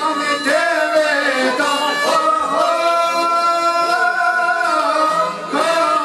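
Male voice singing an Albanian folk song over çifteli and strings, with one long held note in the middle.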